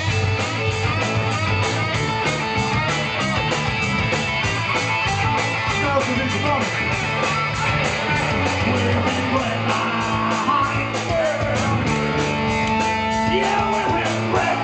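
Rock band playing live and loud: electric guitars, bass and drums, with cymbals keeping a steady even beat.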